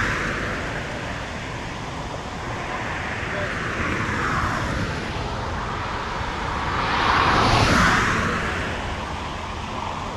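Cars driving past one after another on a road, tyre and engine noise swelling and fading with each pass. One fades out just after the start, a quieter one swells in the middle, and the loudest passes close about seven to eight seconds in.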